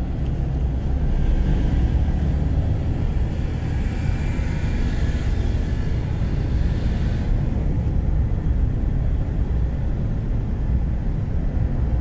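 Steady low rumble of a car driving, engine and tyre noise on the road. A hiss swells from about a second in and fades out around seven seconds in.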